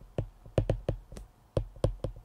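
A stylus tapping and clicking on a tablet's glass screen while handwriting: about ten sharp, irregularly spaced taps.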